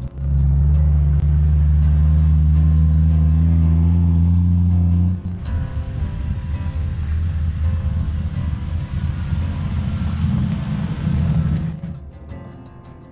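Jeep Wrangler TJ engine droning steadily for about five seconds, then a rougher, uneven rumble of the Jeep driving on a gravel dirt road, which drops away just before the end.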